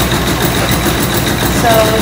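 Belt-driven stone grist mill running steadily while grinding corn: the rumble of the millstones and drive with a fast, even rattle from the pulleys and gearing.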